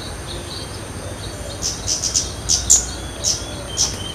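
Scarlet-headed flowerpecker calling: a run of sharp, very high chip notes, several a second, beginning about one and a half seconds in, with a few fainter thin notes before.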